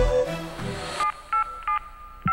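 The song's backing drops away, and from about a second in a flip phone's keypad tones sound as a number is dialled: three short two-tone beeps.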